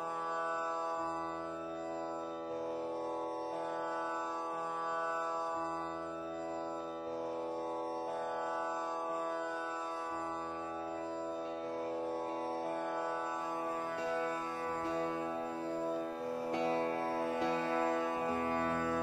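Carnatic music on veena: long held notes over a steady drone, the low notes moving slowly from one pitch to the next, with plucked strokes growing more frequent in the last few seconds.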